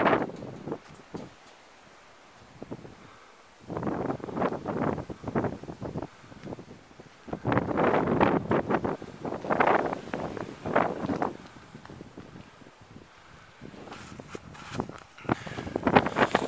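Wind gusting over the phone's microphone in irregular bursts a few seconds long, with quieter lulls between.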